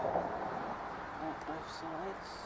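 Faint, indistinct voices over a steady background hiss, with a couple of brief, faint high-pitched rustles near the end.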